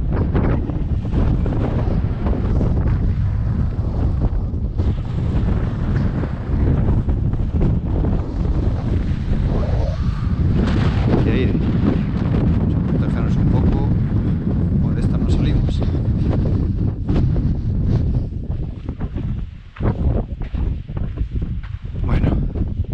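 Strong wind buffeting the camera microphone: a continuous low rumble that swells and falls with the gusts, easing briefly near the end.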